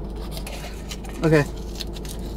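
The seal of a plastic pre-workout tub being picked at with a fingernail and torn off, small scratching and tearing noises over a steady low hum.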